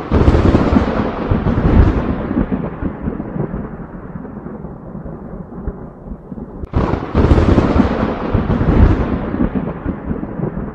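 Thunder sound effect: two thunderclaps, each a sudden crack that rolls on into a long rumble and slowly fades. The second comes about seven seconds in.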